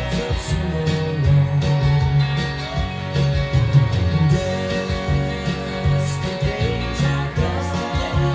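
Country-rock music in an instrumental passage, with a Telecaster-style electric guitar picked along to a full band track.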